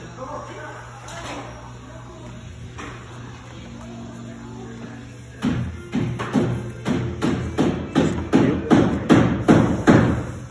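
A cloth rag rubbed hard back and forth over a metal window frame, squeaking with each stroke, about two to three strokes a second, starting about halfway and getting louder. A steady low hum runs underneath.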